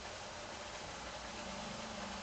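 Pork belly in a spicy stir-fry sauce cooking in a wok over a gas burner: a soft, steady sizzling hiss with no ladle strokes.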